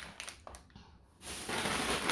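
A few light clicks and taps of plastic snack wrappers and a lollipop being set down on a table in the first second. Then a steadier rustling hiss rises over the last part.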